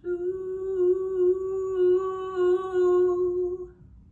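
A woman humming one long, steady note with her lips closed, unaccompanied, ending just before the end.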